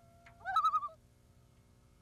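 A short bird call: a held note that rises about half a second in into a louder, wavering call lasting about half a second, over faint steady background hum.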